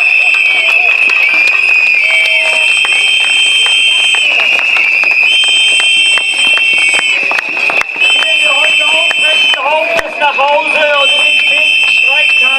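Several plastic whistles blown steadily by protesters, a shrill piercing tone on slightly different pitches that overlap almost without a break. Hand clapping and shouting voices run underneath, with the shouting stronger in the second half.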